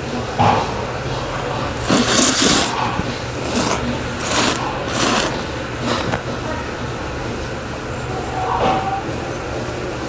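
A man slurping jjamppong noodles from a bowl: one long slurp about two seconds in, then three shorter slurps, over a low steady hum.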